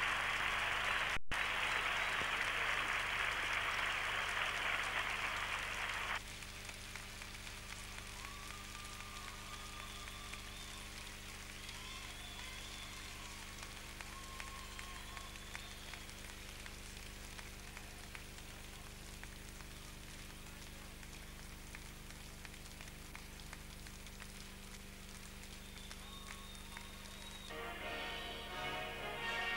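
Arena crowd applauding, cut off abruptly about six seconds in, with a brief dropout just after a second. After the cut, faint music plays quietly.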